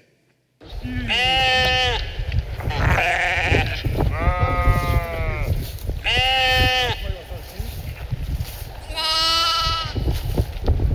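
A sheep stuck in a narrow trench bleating as it is hauled out, five long bleats about two seconds apart. Under the bleats runs a continuous low rumbling noise.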